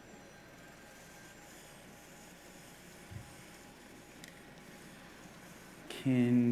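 Quiet room tone of a hall with a steady faint hiss, broken by one soft low thump about halfway through and a faint click a second later.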